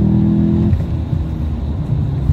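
BMW M5 E39's 5-litre naturally aspirated S62 V8 with a Supersprint X-pipe exhaust, heard from inside the cabin, pulling hard at steady revs. Its note cuts off suddenly about two-thirds of a second in, leaving a low rumble with road noise.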